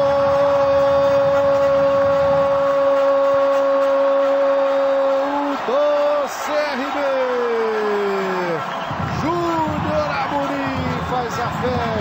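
A male football commentator's goal cry: a long 'Gooool' held on one steady note for about five seconds, then wavering and falling in pitch as the call runs on, over background crowd noise.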